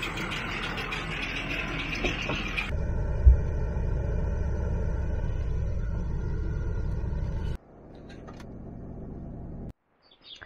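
Farm tractor pulling a John Deere round baler, engine and baler running in the hay field. A few seconds in, the sound changes to a deeper, steady rumble with a single loud knock as tractor and baler drive by on a gravel road. Near the end it drops to a quieter rumble and cuts off.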